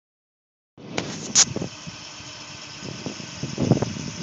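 Bucket truck's engine running steadily, heard from up in the bucket, starting abruptly under a second in. Sharp clicks and knocks come over it, the loudest a short burst about a second and a half in and a cluster near the end.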